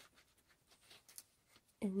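Faint rustling and a few light ticks as a glass dip pen and its cardboard gift box are handled.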